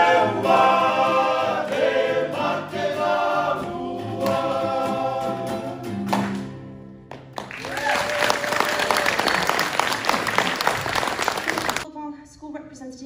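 A small group singing a song in harmony to acoustic guitar and ukulele, ending on a held chord about six seconds in. After a brief pause, audience applause follows for the rest of the time.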